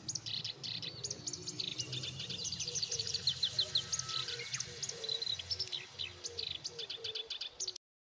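Birds chirping busily in quick runs of short, high chirps, over a faint low hum. The sound cuts off abruptly near the end.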